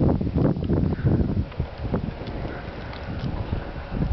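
Gusty wind buffeting the camera microphone, heaviest in the first couple of seconds and then easing.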